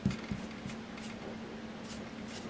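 Blending brush dabbing and sweeping white pigment ink onto cardstock: a run of soft, brief brushing swishes, about two or three a second, over a faint steady hum.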